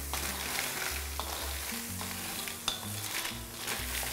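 Blood cockles in their shells being stirred with a wooden spatula in a metal wok, sizzling as a little water heats among them, with a few sharp clicks of shells and spatula against the pan.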